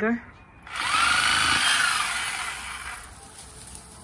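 Electric reciprocating saw cutting at the base of a spruce tree: it starts about a second in as one burst, its motor pitch rising and then falling as it slows and fades out over about two seconds.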